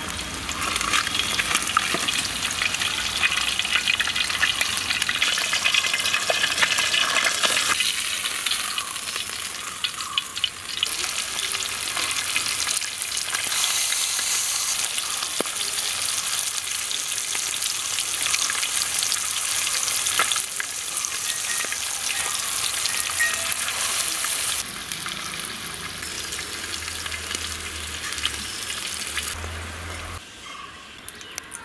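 Masala-marinated fish steaks shallow-frying in hot oil in a wide pan: a dense, steady sizzle with crackling of spitting oil, shifting in loudness a few times.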